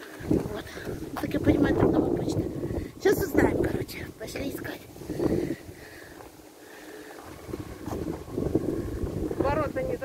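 Wind buffeting a phone's microphone in gusts, easing for a moment about six seconds in and then picking up again, with indistinct voices under it.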